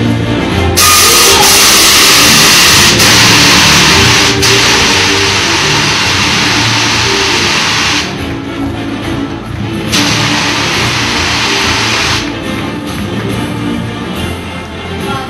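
Stage CO2 jets blasting: a loud, even hiss that starts sharply about a second in and cuts off about eight seconds in, then a second blast of about two seconds, over background music.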